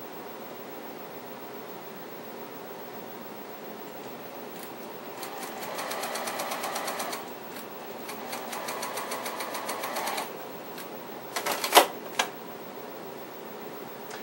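Juki TL-98Q straight-stitch sewing machine stitching quilt patches together in two short runs of rapid, even stitches with a brief pause between, then a few sharp clacks near the end.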